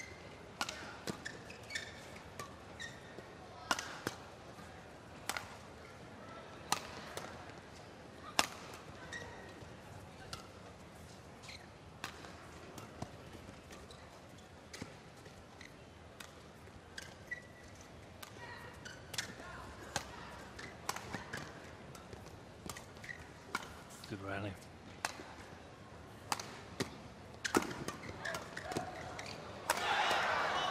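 Badminton rally: rackets striking the shuttlecock back and forth, a sharp crack about once a second, with short squeaks of shoes on the court over a faint arena background.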